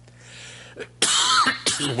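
A man coughs once, suddenly and loudly, about a second in, after a quiet pause.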